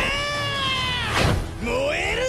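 A man's voice shouting in two long, drawn-out yells: the first held and slowly falling in pitch, the second starting near the end with a rising pitch.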